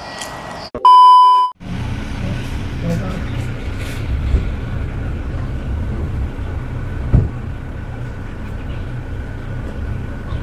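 A loud electronic beep lasting about a second, about a second in, followed by a steady low rumble.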